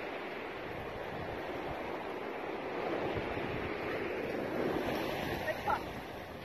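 Small waves washing onto the sand, with wind rushing on the microphone. A couple of brief high-pitched sounds come near the end.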